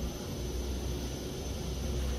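Fujitec passenger elevator car travelling downward: a steady low rumble with an even hiss.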